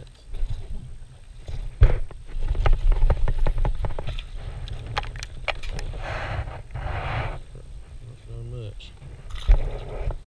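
Clicks, knocks and rattles of a small bass being unhooked and handled on a plastic kayak deck. There are two short rushing bursts about six and seven seconds in.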